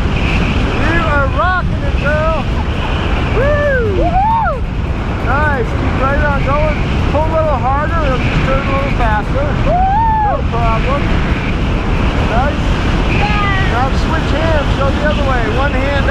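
Steady wind rushing over the camera microphone under an open tandem parachute, with short voice-like exclamations breaking in over it throughout.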